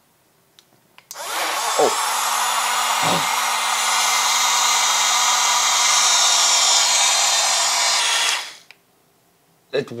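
Small electric personal cup blender running for about seven seconds. Its motor whirs loudly and evenly as it blends a shake, then winds down and stops. A few small clicks come just before it starts.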